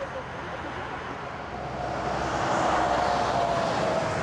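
Motorway traffic passing at speed: tyre and engine noise of a passing vehicle swelling steadily and loudest near the end, with a faint tone that sinks slightly as it goes by.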